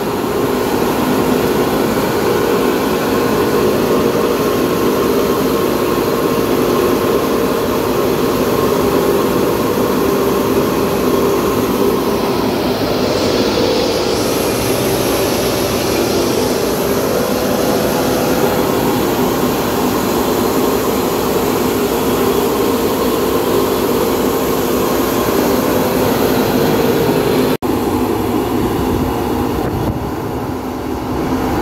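Tractor-driven threshing machine running steadily under load while threshing pearl millet, a loud continuous mechanical drone.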